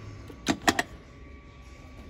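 Three sharp metallic clinks close together about half a second in, the middle one the loudest, as old metal hand drills are handled on a table.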